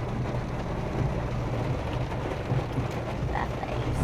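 Steady low rumble of a Toyota Yaris heard from inside the cabin while driving, with a hiss of tyres on a wet road.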